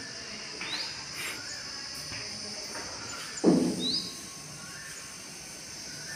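Birds chirping, two short rising chirps over a steady high background hiss, with a single short low thud about three and a half seconds in.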